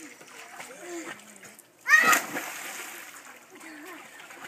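A child jumps into an above-ground swimming pool, and the loud splash comes about two seconds in, together with a short high-pitched shriek. Water sloshing and children's voices carry on before and after it.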